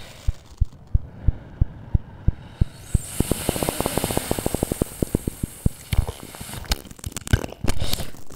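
Live electronic music: a train of short, low clicks, about three a second, that speeds up into a rapid roll near the middle under a rising high hiss, then slows again toward the end.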